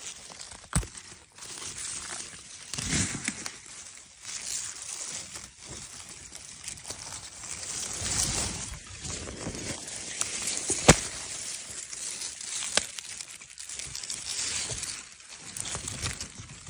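Close-up rustling of wild garlic leaves and stems being handled and picked, with a few sharp snaps as stems break, the loudest about eleven seconds in.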